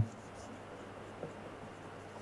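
Marker pen writing on a whiteboard: faint scratching strokes, with a small tick about a second in.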